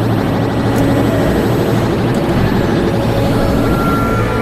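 Loud, sustained low sci-fi rumbling drone with a rapid fluttering texture and steady tones riding on top, like a hovering machine or craft; suspenseful film sound design blended with the score.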